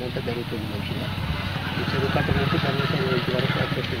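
A man speaking Telugu over a steady low engine rumble, which swells around the middle.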